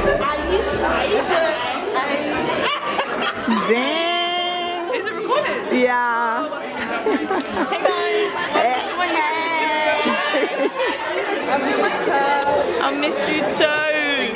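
A group of people chatting over one another in a large hall.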